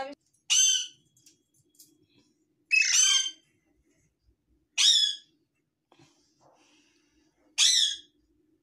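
Young Alexandrine parakeet giving four loud, harsh squawks, each about half a second long and falling in pitch, roughly two seconds apart.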